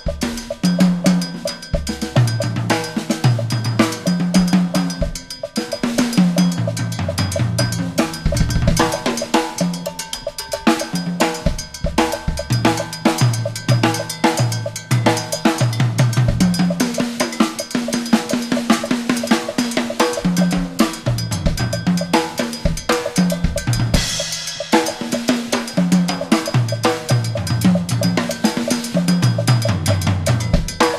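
Acoustic drum kit played solo at speed: a steady cowbell pattern rings over busy tom and bass-drum figures that step between several tuned drum pitches, with snare and rimshot strokes mixed in. A cymbal wash swells about 24 seconds in.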